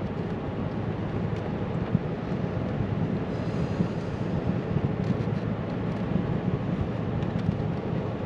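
Steady engine and tyre noise heard inside the cab of a truck driving along a wet road, with a small tap about two seconds in.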